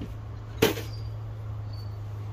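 A removed air intake assembly being set down, making one sharp knock about half a second in, over a steady low hum.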